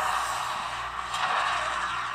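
A signal flare from a flare gun shooting up into the sky with a steady hiss that slowly fades as it rises, heard in a film's sound mix.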